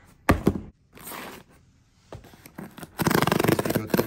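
Cardboard mailer box's perforated tear strip being ripped open: a loud, fast crackling rip in the last second. Before it, two sharp knocks and a brief rustle as the box is handled.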